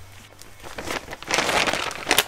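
Plastic bag of shredded cheese crinkling as it is handled, starting quietly and getting loud about a second in.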